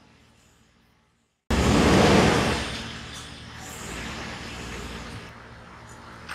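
Road traffic noise that cuts in suddenly after a brief dropout, loud at first and then settling to a steadier, lower din.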